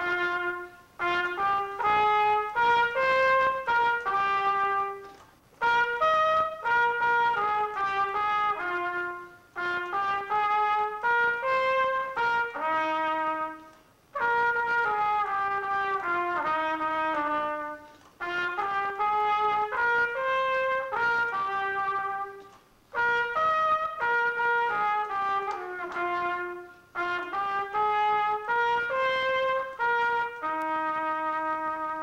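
Unaccompanied solo trumpet, a Chesterhorn whose valves are pressed by a touch-pad-controlled compressed-nitrogen mechanism, playing fast runs and leaps in short phrases. The phrases are broken by brief pauses about every four seconds.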